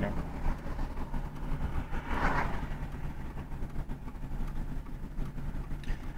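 Steady low rumble of a car's engine and road noise heard inside the cabin, with a brief faint sound about two seconds in.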